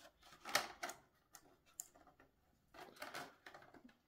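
Light clicks and scrapes of a thin 3D-printed plastic fuselage former being handled and pressed into place inside a printed fuselage section by gloved fingers, with a sharper click about half a second in and a few more around three seconds.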